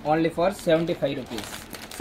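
Thin plastic wrapping crinkling around a stack of bangles as it is handled and lifted out of its box, under a man's speech.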